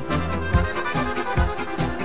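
Instrumental passage of a disco pop-folk song: an accordion plays the melody over a steady disco beat of drums and bass.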